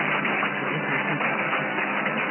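Instrumental music received off the air on 873 kHz AM mediumwave: muffled and narrow-band, with a steady noise floor behind it.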